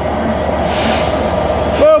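Passenger coaches of a locomotive-hauled train rolling steadily past, with the drone of a Class 67 diesel locomotive running in the train. A brief hiss about half a second in.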